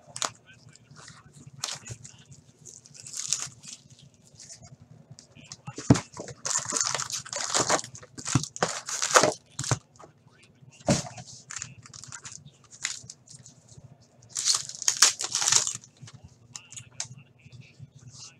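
Shrink-wrap, cardboard and foil wrapper crinkling and tearing as a sealed Upper Deck SP Authentic hockey card box and a pack inside it are opened by hand: scattered rustling bursts, loudest a few seconds in and again near the end, with two sharp taps along the way.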